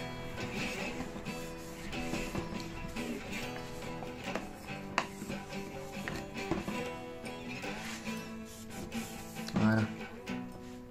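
Background acoustic guitar music with plucked notes, a single sharp click about halfway through and a brief louder sound just before the end.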